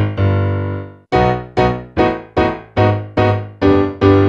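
Piano sound from a digital keyboard playing a B major arpeggio over a bass line stepping down chromatically from B towards G. A held chord, a short break about a second in, then evenly struck notes about two or three a second, ending on a held chord.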